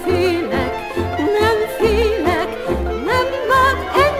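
Hungarian csárdás band music: a high lead melody, likely a violin, played with heavy vibrato and quick upward slides over a steady two-to-a-second bass and chord accompaniment.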